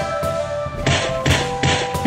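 Trailer score music with sustained held tones, then three sharp noisy hits in quick succession from about a second in, as the cut to the fight comes.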